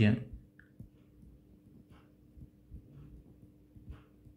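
Faint, scattered taps and light scratches of a stylus writing on a tablet screen, over a faint steady hum.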